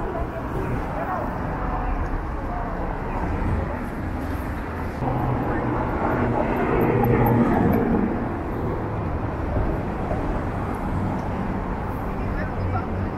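City street traffic at a busy intersection: steady road and engine noise as cars drive through, with a louder vehicle pass-by swelling about six to eight seconds in.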